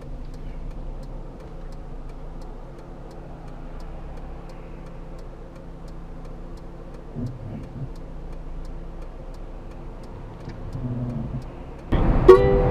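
Car engine running steadily, heard from inside the cabin with road noise, and a fast regular ticking about two to three times a second. A couple of brief low knocks come about seven seconds in.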